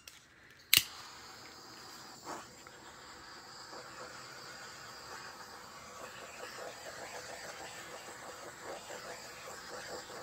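A handheld torch is clicked alight about a second in, then its flame hisses steadily as it is passed over wet acrylic pour paint to pop air bubbles.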